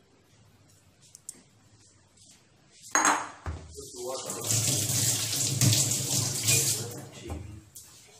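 A knock about three seconds in, then water running from a tap into a sink for about three seconds.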